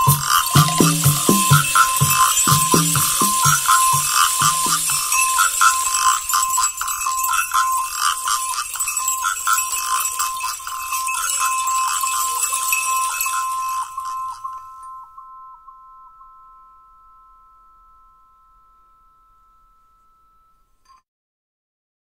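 Rhythmic music of small hand percussion: shakers, rattles and jingles playing over a beat, with two steady high ringing tones. The beat drops out about five seconds in, the shaking stops near fifteen seconds, and the ringing tones fade away by about twenty-one seconds.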